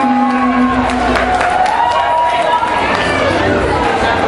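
A crowd of party guests cheering and shouting, with one long drawn-out voice call held over the noise.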